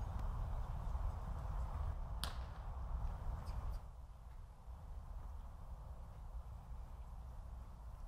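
A single sharp crack about two seconds in, then two faint ticks a second later, over a low steady rumble.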